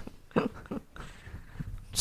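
A short, quiet vocal sound from a person about half a second in, in an otherwise quiet pause between talk.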